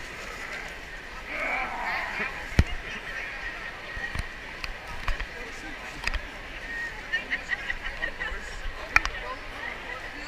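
Chatter of a crowd of people talking around the microphone, with a few sharp knocks; the loudest come about two and a half seconds in and near the end.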